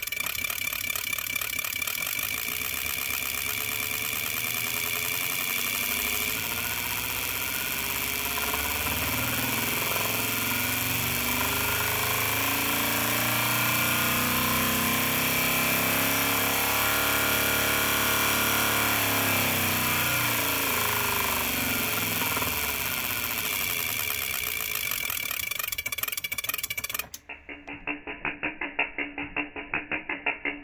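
Spark plug ignition test rig running, a bank of plugs firing in open air through solid-core plug wires, with a steady, loud buzzing rattle whose pitch rises and then falls through the middle. It cuts off suddenly near the end and gives way to slower, regular clicking.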